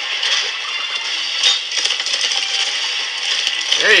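A herd of creatures stampeding, a dense, steady clatter and rattle of many hooves, from the animated show's sound effects.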